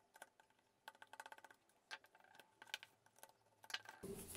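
Faint clicks and ticks of a screwdriver turning out the screws of a plastic Legrand socket-outlet housing, with a quick run of ticks about a second in and a few separate clicks after it.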